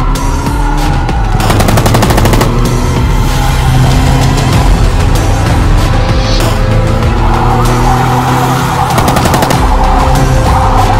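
AK-47 assault rifle fired in rapid automatic bursts, one about a second and a half in and another near the end, over a wailing police siren and dramatic background music.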